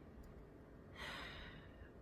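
A single short, soft breath, like a sigh, about a second in, over faint room tone.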